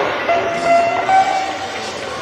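Electric guitar playing a lead improvisation with long sustained notes, one of them pushed up slightly in pitch about a second in.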